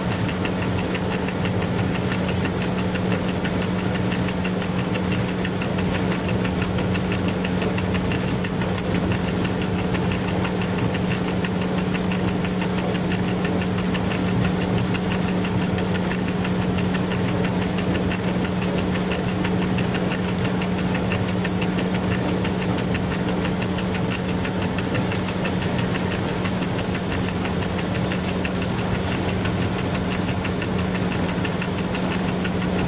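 Running noise inside the cab of an FS E.636 electric locomotive on the move: a steady hum over an even rumble of machinery and wheels on rail, unchanged throughout.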